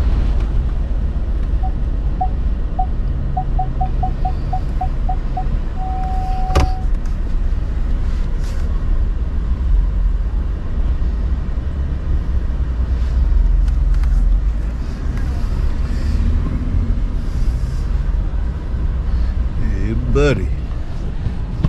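Inside a pickup truck's cab with the engine running low: a run of short beeps that come faster and faster and then merge into one steady tone, like a parking sensor closing on an obstacle, followed by a sharp click.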